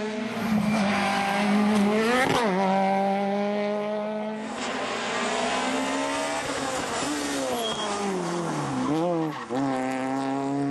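Rally car engine revving hard at high rpm through a stage, its pitch dropping sharply and climbing again at gear changes about two seconds in, with several quick dips near the end.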